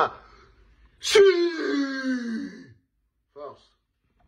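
A man's long, drawn-out vocal cry that starts sharply about a second in and slides slowly down in pitch for about a second and a half, then a short vocal sound near the end.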